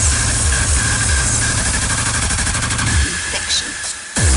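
Hardcore gabber music from a live DJ set: a fast, heavy distorted kick beat under a dense noisy mix with a steady high tone. The beat drops out about three seconds in, as the track breaks down for a moment.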